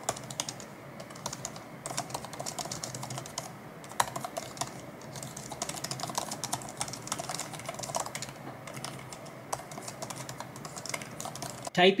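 Typing on the 15-inch MacBook Air M2's scissor-switch Magic Keyboard: a fast, continuous run of light key clicks, a few strokes sharper than the rest.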